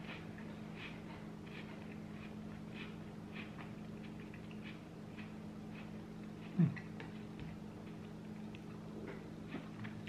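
Faint chewing of a cracker with pimento cheese spread: soft crunches about twice a second over a steady low hum. A short falling vocal 'mm' about two-thirds of the way through.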